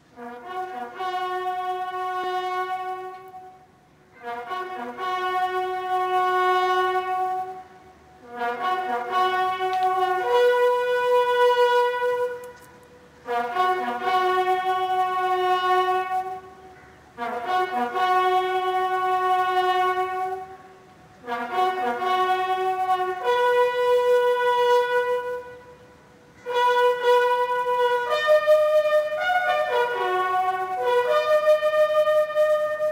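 Military buglers sounding a slow ceremonial bugle call as a salute to fallen soldiers: long held notes with short breaks between them, and near the end two bugles sound different notes together.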